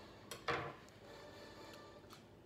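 Eating close to the microphone: a short, loud mouth noise as a bite is taken from a soft, moist raisin cake about half a second in, then faint chewing and room tone.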